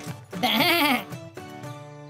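A cartoon goat's bleating laugh, a short wavering 'meh-eh-eh'. After it, music with steady held notes comes in about halfway through.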